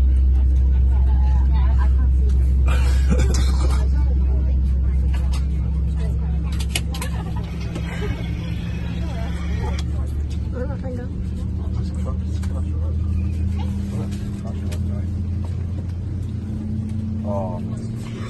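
Steady low drone of an Airbus A320's cabin, coming in abruptly and loud and easing slightly after about six seconds, with faint voices of passengers under it.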